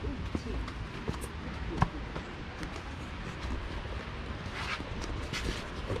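Footsteps and rustling of someone walking along a path while carrying the recording phone, over a low rumble of handling noise. Irregular light knocks, one sharper about two seconds in, and faint voices in the background.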